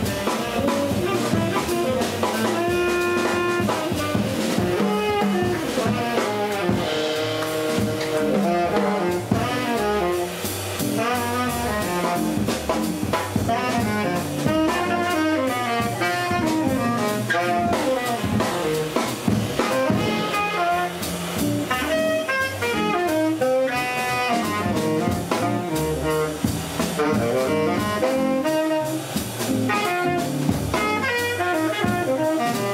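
Small jazz group playing live: saxophone lines over electric guitar, upright bass and drum kit.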